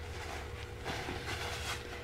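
Faint rubbing of a rag wiping dirt off a steel square gauge block, with a thin steady hum underneath.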